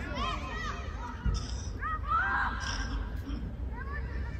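Young footballers and adults calling and shouting to each other across the pitch, the voices distant and indistinct, with one dull thump about a second in.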